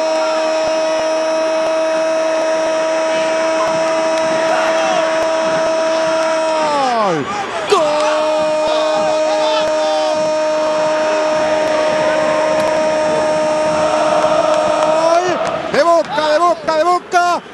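Football TV commentator's drawn-out goal cry, 'gol' held as one long steady note for about seven seconds, its pitch sliding down as the breath runs out, then taken up again and held for about seven more seconds until near the end.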